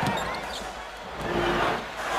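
A basketball bouncing on the hardwood court over the steady noise of the arena crowd.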